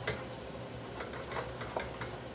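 Minced garlic and ginger sizzling gently in oil in a small saucepan while a wooden spatula stirs them, with a few light scrapes and clicks against the pan. The aromatics are being sweated to release their flavour.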